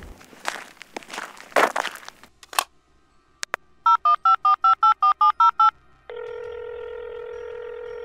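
Touch-tone telephone being used to place a call. A click as the line is opened, then about ten quick dialing beeps, then a steady tone on the line for about two seconds that cuts off suddenly as the call connects.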